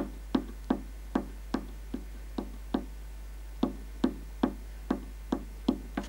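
Thin spruce top plate for a nyckelharpa tapped with a screwdriver, about two or three dry wooden knocks a second, each ringing briefly, with a short pause near the middle. It is tap-tone testing: the tone changes from place to place on the plate, which shows where its nodal points lie.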